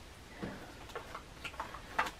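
Faint, scattered light clicks and knocks of items being handled and set down while rummaging in a bag.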